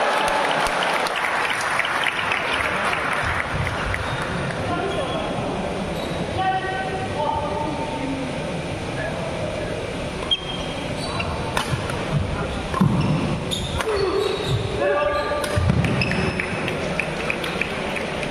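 Spectators cheering and calling out, loudest over the first few seconds, then fading to scattered voices and shouts. Later a rally brings sharp racket-on-shuttlecock hits and shoe squeaks on the court surface, echoing in the hall.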